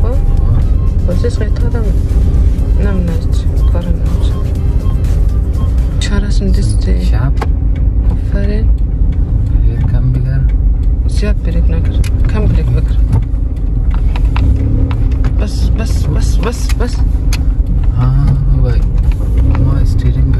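Cabin noise of a Toyota car being driven: a steady low engine and road rumble, with voices and music over it.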